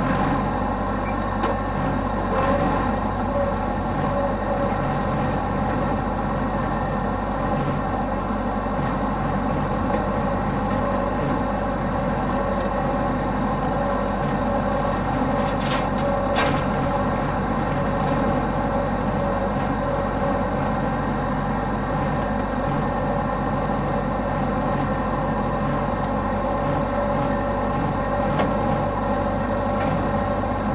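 Massey Ferguson 383 diesel tractor engine running steadily at working speed while mowing pasture with a rotary cutter (bush hog).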